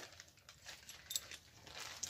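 Quiet room with faint handling noise and one small, sharp click about a second in.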